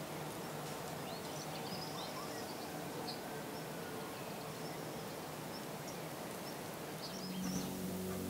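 Faint outdoor ambience: a steady low hiss with a few faint, short, high bird chirps scattered through it.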